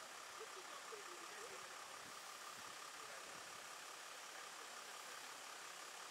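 Faint steady outdoor background hiss with a thin steady high tone. Faint distant voices can be heard in the first second or two.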